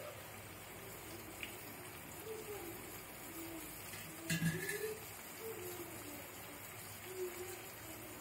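Carrots, green chillies and bay leaves frying gently in oil in an aluminium pot: a low, steady sizzle, with a brief louder sound about four seconds in.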